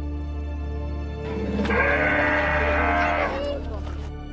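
A single drawn-out animal-like call with a wavering pitch, starting about a second in and lasting a little over two seconds, over steady background music.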